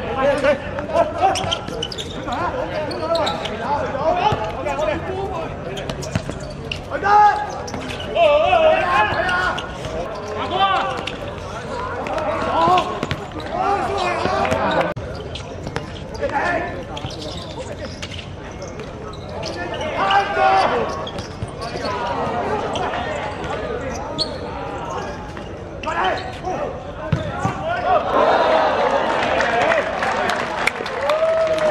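Players and onlookers shouting and calling across a football match, with scattered thuds of the ball being kicked on a hard court. The voices grow louder near the end.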